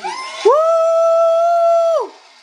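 A contestant's long, high-pitched whoop, played through a TV speaker. It swoops up about half a second in, holds one pitch for about a second and a half, and drops off at the end.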